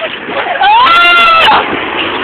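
A child's loud, high-pitched squeal a little under a second long, near the middle, gliding up and then holding.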